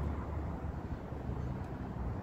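Steady low rumble of outdoor background noise, with a faint low hum and no distinct events.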